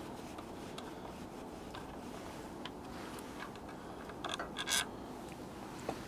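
Faint metallic clicks and light scraping from a Torx driver and bolt being worked off the air filter element, over quiet room tone, with a short cluster of handling sounds about four seconds in.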